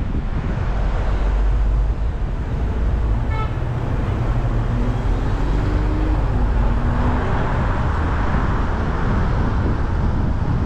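Steady city traffic and road noise from a moving car, with a deep wind rumble on the microphone. A brief car-horn toot comes about three and a half seconds in, and a low droning tone rises and then drops between about five and seven seconds in.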